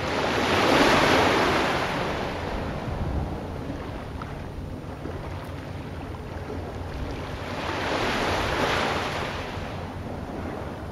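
Ocean surf: waves washing in, two broad swells of rushing water noise, one just after the start and another near the end, over a steady low rumble.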